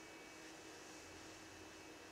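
Near silence: room tone with a faint steady hiss and a low hum.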